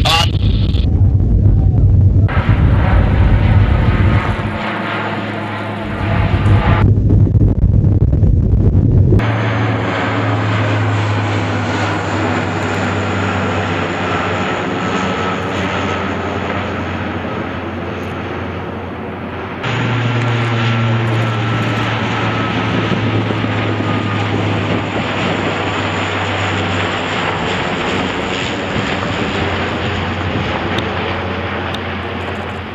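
C-130J Super Hercules turboprop engines and propellers droning steadily, first inside the cargo hold during the drop and then from the ground as the aircraft flies over dropping paratroopers. The drone keeps a low steady hum throughout but jumps in level and tone several times with abrupt cuts.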